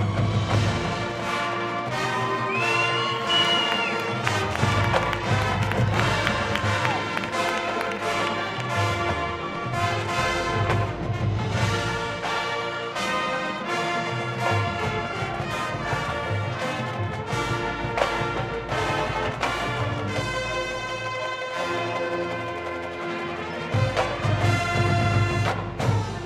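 High school marching band playing its field show: brass chords over drums and low bass, with regular percussion hits. It swells louder near the end.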